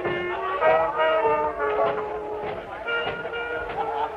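Small swing jazz group playing live: a lead wind instrument carries a melody of short held notes over piano and drum rhythm.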